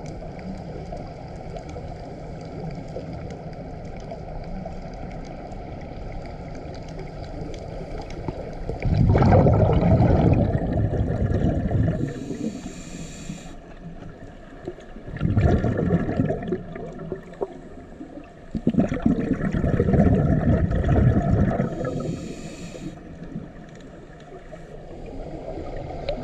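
Scuba breathing through a regulator, heard underwater: three rushing bursts of exhaled bubbles, each two to three seconds long, with a short high hiss of inhalation after the first and the last. Under them is a steady low drone.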